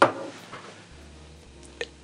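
A sharp pop as the small Peavey combo amp's power plug is pulled from the Anker 521 power station's inverter and moved over to wall power. Then only faint hiss and a low hum from the amp, with a small click near the end.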